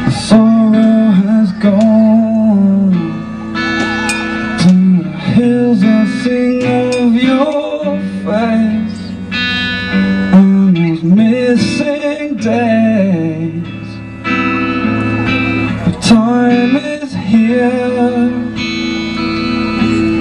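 Acoustic guitar played live, carrying a melody whose notes bend and waver in pitch.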